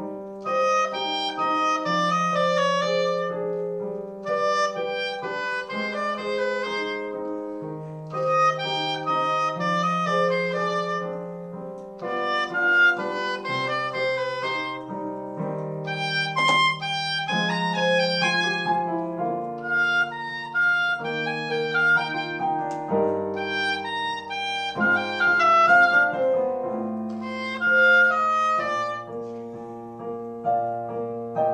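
A reed woodwind plays a solo melody in phrases of about two seconds, with piano accompaniment underneath. It is the opening movement of the piece, in C harmonic minor.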